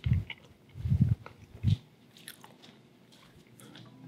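A person chewing a mouthful of carrot cake close to the microphone: three soft, low chewing sounds in the first two seconds, then only faint mouth noise.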